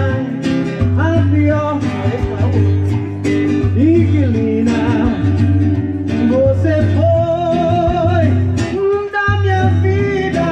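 A man singing into a microphone and strumming an acoustic guitar, both amplified through a PA speaker: a live song, with a long held sung note about seven seconds in.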